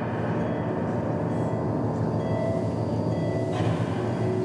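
A steady low rumble with a rattling texture and faint sustained tones over it, part of a haunted-house sound effect track.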